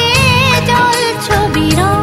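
A song playing: a wavering sung melody with vibrato over bass notes and a drum beat.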